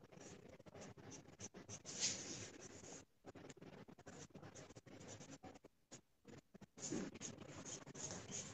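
Charcoal pencil scratching on Bristol paper in many short, quick strokes with brief pauses between them, faint, a little stronger about two seconds in and near the end.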